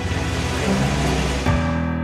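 Background music over an Infiniti SUV pulling away, its engine and tyre noise cutting off suddenly about one and a half seconds in, leaving the music alone.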